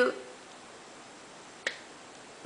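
A single short, sharp click about one and a half seconds in, after the tail of a spoken word at the very start.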